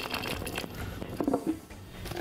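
Shelled peanuts pouring into a glass jar: a rapid patter of little clicks against the glass that thins out and stops about a second and a half in.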